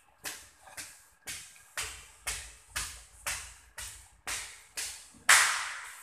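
Evenly paced walking steps, about two a second, each a short scuffing burst picked up by a handheld phone; the last one, near the end, is the loudest.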